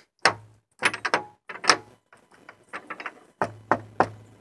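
Rusty wrought-iron handle of an old wooden door being pulled and worked, the locked door clanking and rattling against its latch in a series of sharp knocks.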